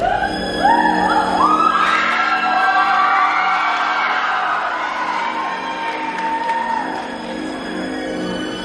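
Music starting in a large hall: a run of rising, swooping tones climbs step by step over the first two seconds, over a sustained low chord that holds on.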